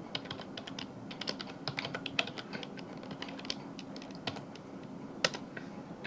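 Typing on a computer keyboard: a quick, irregular run of key clicks that thins out after about four and a half seconds, with a last couple of keystrokes a little later.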